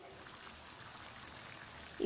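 Faint, steady watery hiss from a pan of kulambu (tamarind gravy) simmering on the stove.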